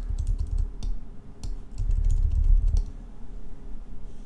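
Clicking at a computer desk while a brush is worked over a Photoshop layer mask. Scattered sharp clicks come over the first three seconds, with low dull thuds underneath.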